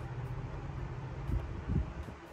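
Steady low hum, with two soft low thumps a little under half a second apart near the end: taps on the laptop's touchpad that open Windows 10 Settings.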